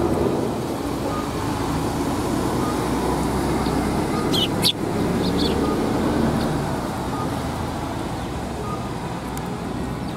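Steady road-traffic rumble, with a few brief high chirps from Eurasian tree sparrows about four and a half to five and a half seconds in.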